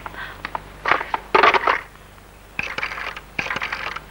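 A telephone handset being picked up and the phone dialled: a series of clicks and rattling bursts.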